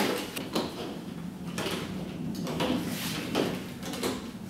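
Plastic bottles, syringes and tubing being handled on a tabletop: a scatter of short knocks, clicks and rustles.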